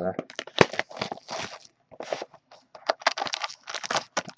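Cellophane shrink-wrap crinkling and tearing as a sealed hockey card box is unwrapped and its cardboard flap opened, a rapid, uneven run of crackling rustles.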